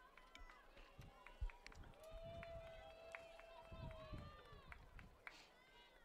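Faint, distant voices of players calling out on the field, including one long held shout about two seconds in. A single sharp knock sounds about one and a half seconds in.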